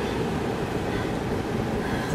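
Steady low rush of a vehicle's running engine and air-conditioning fan heard from inside the cabin, holding an even level throughout.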